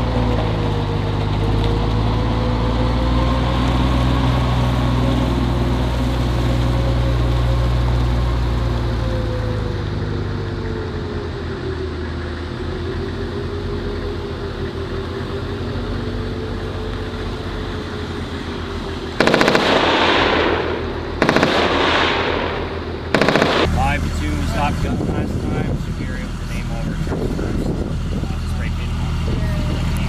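Diesel engines of military vehicles, an eight-wheeled Stryker and a Humvee, running as they drive past. About two-thirds of the way through come three loud, sudden bursts of noise, the first two about two seconds long and the third short.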